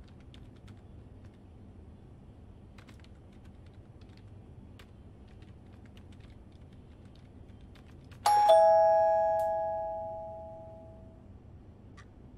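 Faint clicking of typing on a laptop keyboard, then about eight seconds in a doorbell rings a two-note ding-dong, high then low. The chime is the loudest sound and rings out over about three seconds.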